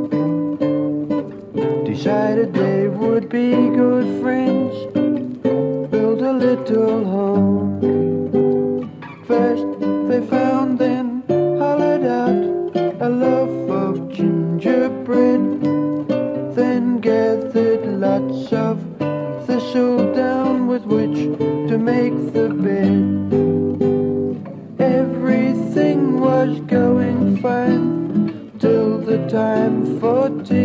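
Folk music played on acoustic guitars, plucked and strummed, over a low bass line.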